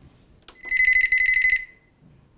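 Recorded telephone ring played through a portable CD player's speaker: one electronic trilling ring, a fast warbling high tone, lasting about a second.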